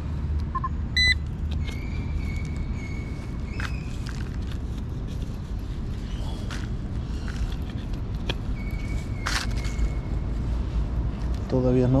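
Hand digging tool chopping and scraping into soft soil, with scattered sharp knocks, over a steady low rumble. A couple of short high beeps come about a second in, and a held high tone sounds briefly after that and again about nine seconds in.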